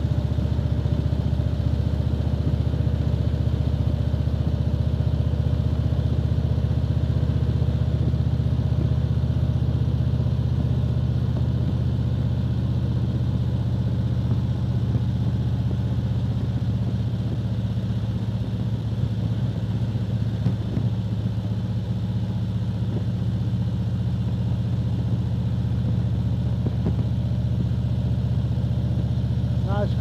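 Touring motorcycle engine running steadily at cruising speed, heard from the rider's seat as a constant low drone.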